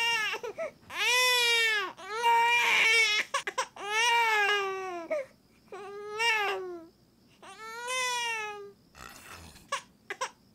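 A baby crying in a series of about five wailing cries, each about a second long with short gaps between, as its blocked nose is suctioned with a mouth-operated nasal aspirator.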